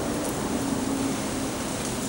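Steady mechanical hum over an even background noise, with no sudden sounds.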